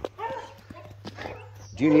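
Faint light taps and scuffs from a dog moving about and playing on dry straw, over a steady low hum.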